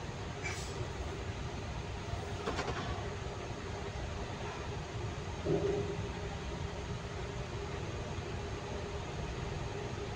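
Steady low rumble of a roll-on/roll-off ferry under way, heard from its enclosed vehicle deck, with a faint steady hum above it. A brief louder sound stands out about five and a half seconds in.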